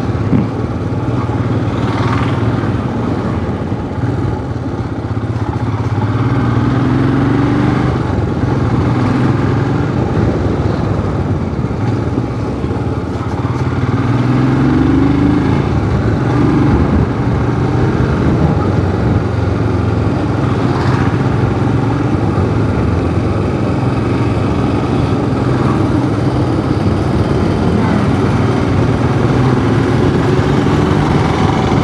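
Motorcycle engine running steadily while riding along a road, with wind rush on the microphone. The engine note swells up and back down briefly a few times, about 7 and 15 seconds in.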